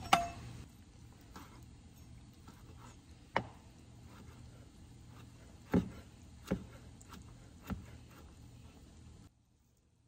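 Chef's knife knocking on a plastic cutting board while boiled chicken gizzards are thinly sliced: five sharp, separate knocks a second or more apart, the first the loudest with a brief ring.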